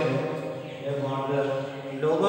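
A man's voice in long, drawn-out, sing-song tones, held steady with only brief breaks.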